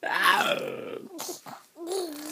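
A baby vocalizing: a loud high coo that falls in pitch at the start, followed by several short grunt-like sounds.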